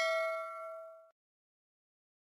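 Notification-bell 'ding' sound effect of a subscribe-button animation, ringing on a few steady tones and dying away about a second in.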